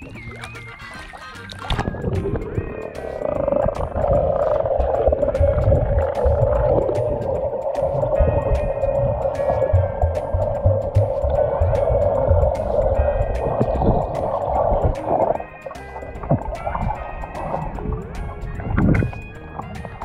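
Background music over muffled underwater water noise. The microphone goes under the surface about two seconds in and comes back up about fifteen seconds in.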